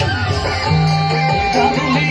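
Loud amplified Nagpuri band music, a melody line over held bass notes.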